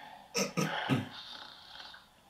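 A man snoring: a short, rough, guttural snore broken into three quick bursts about half a second in.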